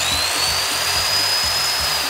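Corded Skil circular saw running free with no load at full speed: a steady high whine over a rushing motor noise, starting to slow near the end.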